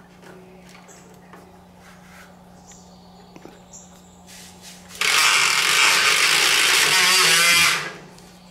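Battery-powered Kobalt toy circular saw running: a loud, even whirring that starts suddenly about five seconds in and dies away just before the end.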